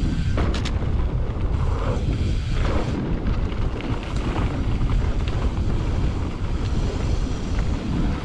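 Wind buffeting the action camera's microphone as a low rumble, over the rattle and knock of a Specialized Turbo Levo electric mountain bike rolling fast down a dirt trail, with a few sharp clicks about half a second in.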